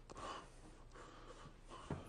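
A faint, sharp intake of breath, a gasp, just after the start, then quiet room tone with another faint breath near the end.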